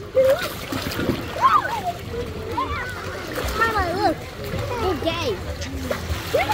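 Water splashing as children move about in a swimming pool, among the overlapping voices of children and adults.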